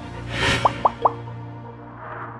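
Channel logo sting: a whoosh, then three quick rising plopping blips, over a held low music tone.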